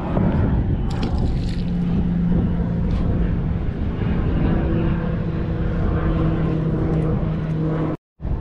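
A steady engine hum holding one low pitch throughout, over a rough low rumble.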